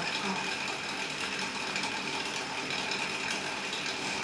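A small machine running steadily with a fast, even mechanical clatter.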